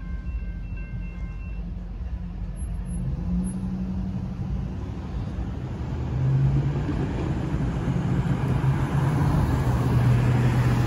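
Railroad crossing warning bell ringing in a steady repeating pattern, stopping about a second and a half in. Then road traffic starts moving across the tracks: car and pickup truck engines pulling away, growing louder from about six seconds in.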